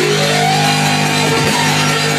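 Loud dance music mixed live by a DJ, played over a club sound system.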